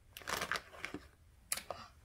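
Thin plastic blind-bag packaging crinkling and tearing as it is ripped open, in two short bursts.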